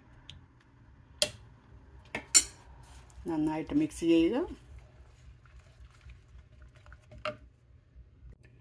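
A stirring utensil knocking and scraping against a steel pot while mixing thick fruit-cake batter, with a few sharp clinks, the loudest about two and a half seconds in and another near the end.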